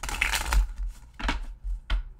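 Tarot cards being shuffled by hand: a rustling burst of about half a second, then two shorter bursts near the end.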